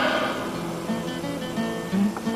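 Slow acoustic guitar music, single plucked notes held and changing every half second or so.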